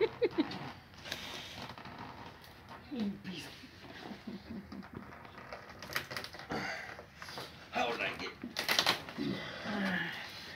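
Low, unclear voices with scattered sharp clicks and knocks, the loudest about six and nine seconds in.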